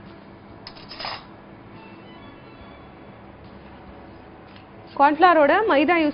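Faint background music under a quiet studio, with one brief scrape or clatter about a second in. A woman starts talking near the end.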